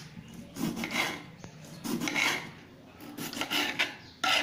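Kitchen knife slicing through a tomato and scraping on a cutting board: three drawn strokes about a second apart, each lasting about half a second.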